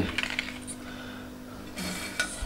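A metal utensil clinking and scraping against a metal serving tray as a piece of kalakand is lifted out: a few light ticks at first, then a brief louder scrape near the end.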